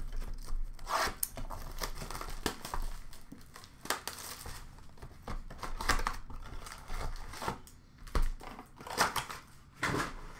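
Upper Deck hockey card pack wrappers torn open and crinkled by hand, in irregular bursts, with a few sharper crackles.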